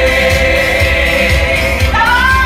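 Euro-disco song with voices holding a long note together over a steady, pulsing beat.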